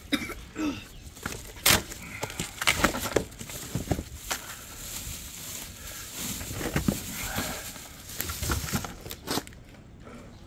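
Cardboard boxes and plastic packaging being handled and unpacked: rustling and crinkling with a string of sharp knocks and taps.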